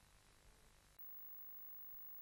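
Near silence: a faint hiss that changes about a second in to a faint steady hum.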